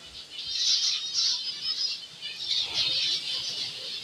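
A colony of caged zebra finches chirping: many short, high calls overlapping.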